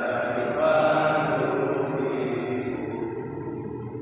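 Slow, chant-like singing with long held notes, from a voice amplified through a microphone.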